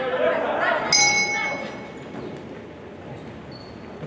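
Boxing ring bell struck once about a second in, giving a clear ring that fades within about half a second, over voices in a large hall. It marks the end of a round.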